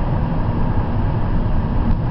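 Steady road and engine noise heard inside a car's cabin while it cruises at highway speed, a deep, even rumble.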